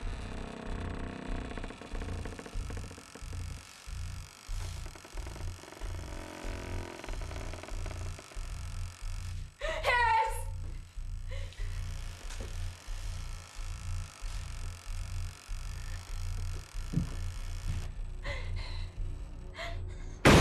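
Suspense film score: a low pulsing beat, about three pulses a second, under a faint sustained drone. About halfway through comes a brief wavering high sound, like a cry or a musical sting.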